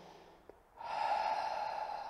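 A man's long audible breath in, starting abruptly about a second in and then fading away: a deep breath taken during a seated yoga stretch.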